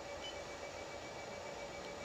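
Quiet room tone: a low steady hiss with a faint steady high-pitched whine, broken only by two very faint short ticks, one about a quarter second in and one near the end.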